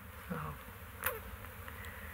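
A pause with a steady low background hum, a short spoken 'So' near the start and a single click about a second in.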